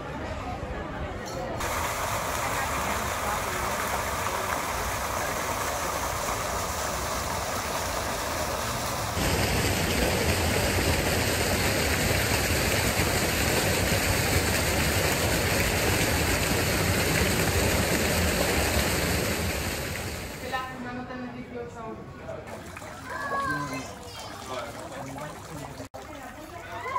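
Fountain jet splashing into its pool: a steady rushing of water that steps up louder about nine seconds in and fades out after about twenty seconds.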